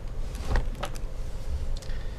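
A few light knocks and scrapes as an aluminium MacBook Pro laptop is shifted on a desk and its lid tilted, over a faint steady hum.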